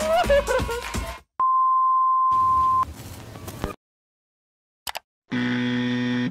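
Background music cuts off about a second in, followed by a steady electronic beep tone lasting about a second and a half, then a short stretch of hiss and silence. Near the end a low, buzzy electronic tone with many overtones starts.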